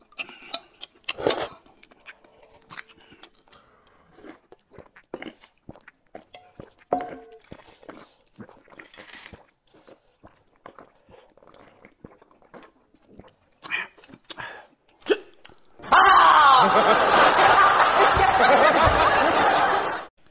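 Eating sounds at a table: slurping soup from a steel bowl, chewing, and light clinks of spoons and skewers. About sixteen seconds in, a much louder burst of canned laughter cuts in and runs until it stops abruptly.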